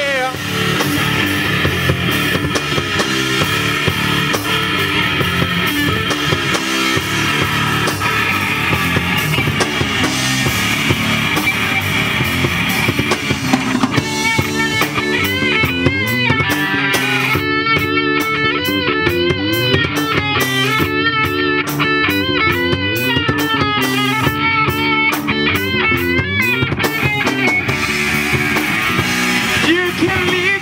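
Live rock band playing an instrumental passage: electric guitars, bass and drum kit. From about halfway through until near the end a lead guitar line of wavering, bent notes rises above the band.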